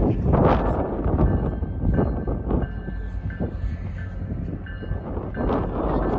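Low, continuous rumble of a train approaching on the rail line, rising and falling in loudness.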